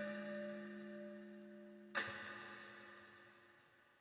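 Ending of a recorded song: bell-like chime strokes. One rings on from just before and a second is struck about two seconds in, each fading away over a low held note until it is faint.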